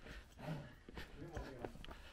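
Faint, low voices of people talking quietly, with a few soft footsteps of people walking on a path.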